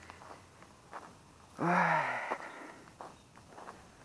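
A man's short exclamation "oy" with a falling pitch, about a second and a half in, amid a few faint footsteps crunching on brick and concrete rubble.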